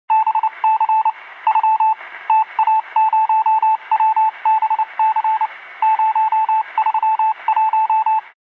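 Rapid electronic beeps at one steady pitch over a faint hiss, coming in irregular runs of several quick beeps with short gaps. It is a text-typing sound effect that beeps as each letter appears.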